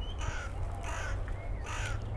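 Crows cawing a few times, short harsh calls spread through the two seconds.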